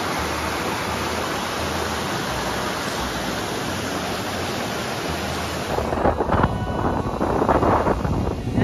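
Water rushing over a rock cascade in a river, a steady hiss. About six seconds in it gives way to gusty wind buffeting the microphone.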